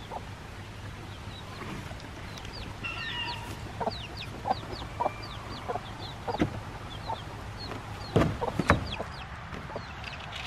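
Young chicks peeping in a string of short falling chirps, with a few knocks from the wooden pen lid and a plastic feeder being handled near the end.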